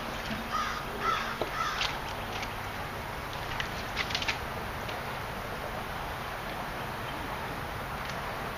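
A bird calling: a few short calls in the first two seconds, then a quick run of calls about four seconds in, over a steady outdoor background hiss.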